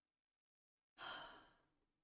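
Near silence, then about a second in a woman's short audible breath into the microphone, lasting about half a second.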